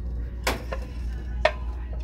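Ceramic plates knocking against each other twice, about a second apart, as they are lifted and handled on a wire shelf, over a steady low hum.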